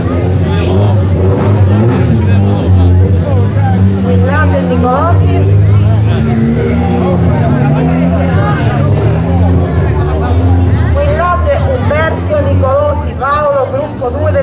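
People talking over a steady low hum from an idling engine.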